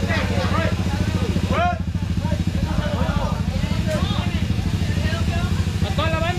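A motorcycle engine idling steadily with an even, low pulse, while people talk over it.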